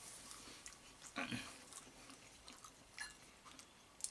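Faint close-up chewing of a mouthful of pasta with minced meat, with a few soft clicks of chopsticks against the bowl and a brief mouth noise about a second in.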